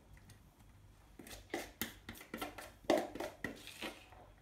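A spoon scraping and knocking against a clear mixing bowl as spring roll filling is scooped out onto pastry: a string of short, irregular scrapes and taps, about three a second.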